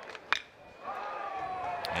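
A single sharp crack of a metal bat hitting the pitch about a third of a second in: weak contact that sends a slow dribbler into play. A low crowd murmur runs under it, and a faint drawn-out voice-like tone slides down in pitch in the second half.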